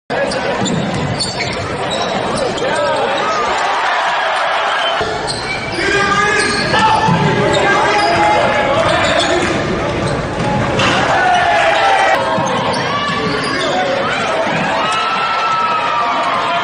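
Basketball game play in a large gym: a ball bouncing on the hardwood court, with people's voices in the hall.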